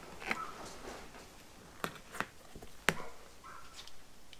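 Rubber padding being cut away from the edge of a fibreglass car seat shell with a hand tool: four sharp clicks and snips, the loudest about three seconds in, over faint handling of the rubber and trim.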